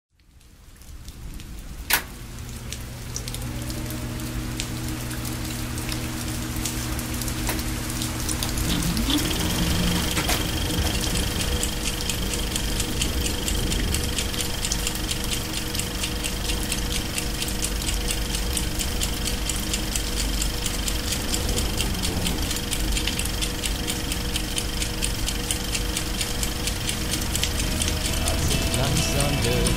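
Hiss and crackle of analogue video static, fading in from silence with a sharp click about two seconds in, over a steady low hum. A thin high tone joins about nine seconds in.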